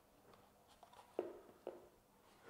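Near silence with a few faint clicks of the plastic filter housing being handled, the clearest two about half a second apart a little past the middle.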